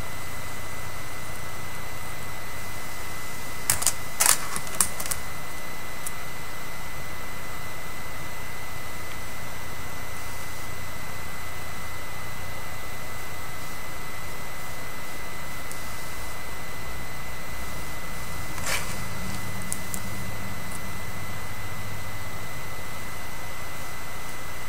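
Steady hiss of recording noise with a faint constant high whine, broken by a quick cluster of four or five sharp clicks about four seconds in and one more click about three-quarters of the way through.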